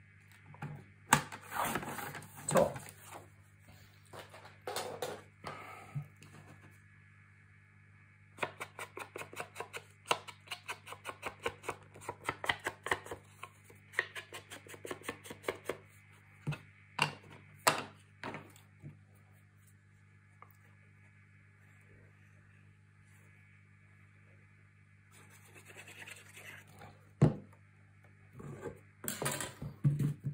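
Paper trimmer and cardstock being handled on a tabletop: a few sharp clicks and knocks early on, then a long run of quick scratchy ticks, then scattered clicks and one loud knock near the end, over a steady low hum.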